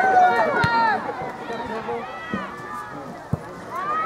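Several high-pitched voices calling and shouting across an open soccer field, loudest in the first second and quieter through the middle, with a few short sharp knocks in between.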